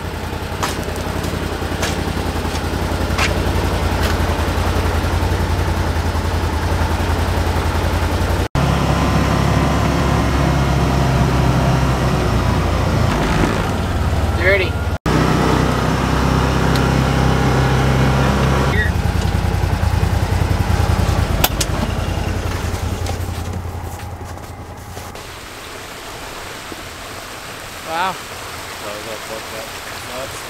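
Side-by-side UTV engine running steadily as it drives, heard from inside the cab, with two brief dropouts. Near the end the engine fades out, and a steady rush of water from a field-drainage tile outlet takes over.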